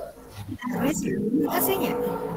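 Several people's voices overlapping through a video call's audio, starting about half a second in, as participants answer a closing Islamic greeting.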